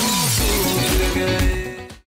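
Upbeat background music with a heavy bass, with a loud shattering crash about a second in and another near the end. The audio then fades out and stops.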